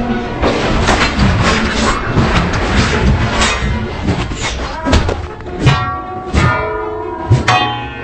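Dramatic soundtrack music punctuated by a series of sharp hits and thuds, several of them ringing on afterwards.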